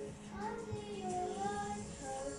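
A child singing a slow melody along with a karaoke backing track playing from a television.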